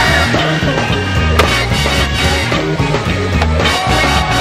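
Skateboard sounds, wheels rolling with one sharp clack of the board about a second and a half in, over a music track with a steady bass line.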